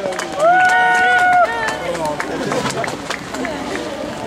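Footballers' voices on the pitch: a loud, long held shout starting about half a second in and lasting about a second, then scattered, fainter calls.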